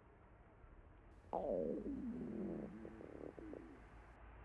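A hungry stomach growling: a long gurgling rumble that starts suddenly about a second in, slides down in pitch, then bubbles on irregularly for a couple of seconds.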